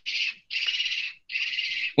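A steady, high-pitched chirring noise with no low sound under it, coming in three stretches broken by two short gaps.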